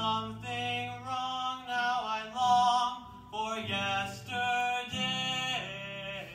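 A young man singing with acoustic guitar accompaniment, in phrases of held notes over sustained guitar chords.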